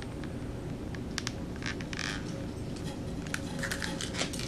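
Light clicks and short crinkles of clear plastic wax melt packs being handled, over faint steady background noise.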